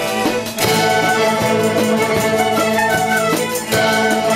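Youth orchestra of strings, flutes and drum kit playing a tune over a steady beat. The music drops briefly about half a second in and again just before the end.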